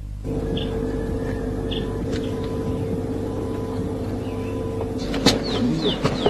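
Outdoor ambience with a steady hum and a few short bird chirps. A sharp knock comes about five seconds in, followed by a quick run of short falling chirps.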